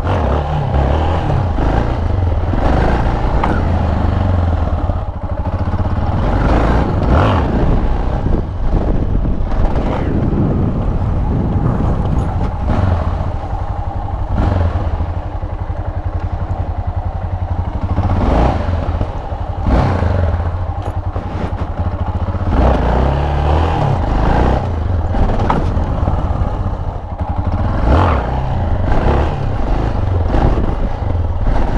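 Yamaha XT660's single-cylinder engine revving hard in repeated surges that rise and fall every second or two, as the rider throttles up for wheelies, with wind rushing over the microphone.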